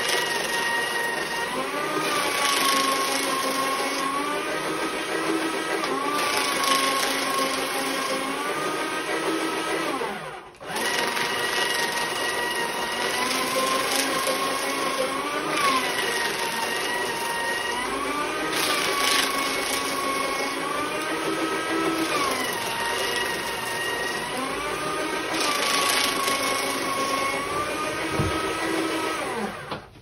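Desktop paper shredder running and cutting through printed sheets fed in one after another; its motor whine sags in pitch as each sheet is pulled through, then rises again. It stops for a moment about ten seconds in, starts again, and cuts off near the end.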